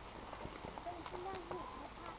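Horses walking on a dirt arena, their hooves giving irregular soft clops, with distant voices in the background.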